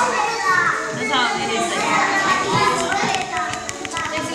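Many young children's voices chattering and calling over one another, with a few light clicks about three and a half seconds in.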